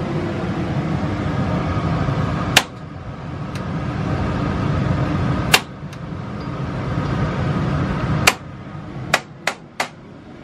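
Igniter of a small RV gas oven snapping as it is pressed, three single clicks a few seconds apart and then three in quick succession near the end, with the burner not yet catching. A steady low rumble runs underneath.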